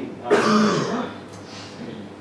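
A man coughs once to clear his throat, a short rough burst about a third of a second in.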